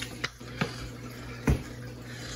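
A few light clicks and one louder knock about one and a half seconds in, the sound of paint cups and tools being handled and set down, over a steady low hum.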